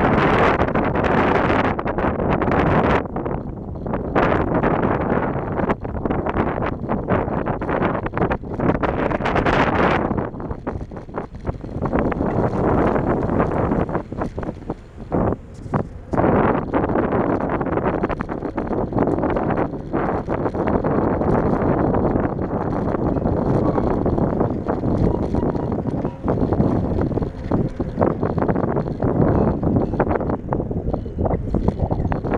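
Wind buffeting the microphone of a camera on a moving bicycle: a loud, rough, gusting noise that surges and dips, briefly easing about halfway through.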